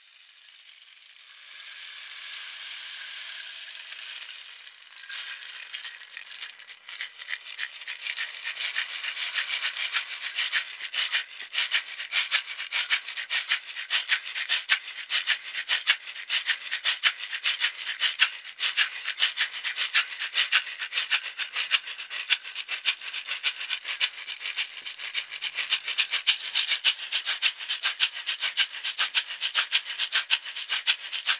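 Handmade wooden-box rain stick, its inside studded with tiny nails (brads), being played. For the first few seconds it gives a smooth, even hiss of falling fill, then a dense, uneven run of crisp clicks that grows louder toward the end.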